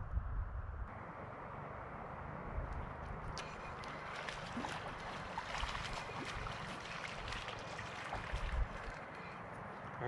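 Steady outdoor background of wind and flowing river water, with wind rumbling on the microphone for the first second. From about three seconds in come faint scattered light clicks and rustles.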